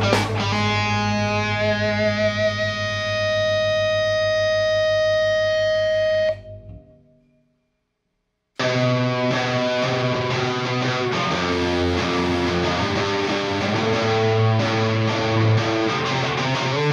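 Live rock band with distorted electric guitar: a chord held ringing, one note in it swelling louder, then cut off about six seconds in. After about two seconds of silence, guitar, bass and drums crash back in together and play on.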